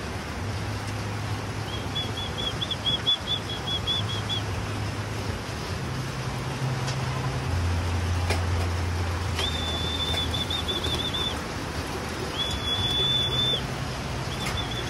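Steady rain hissing, with a low hum underneath. A high, trilling whistle sounds a couple of seconds in and twice more near the end.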